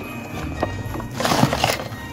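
Cardboard advent calendar door being pried and torn open by hand: a few clicks and two scraping, tearing bursts, the louder one past the middle, over background music.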